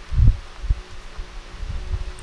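A soft low thump about a quarter second in, the loudest sound, then a sharper knock and a few weaker ones, with rustling close to the microphone, over a faint steady hum.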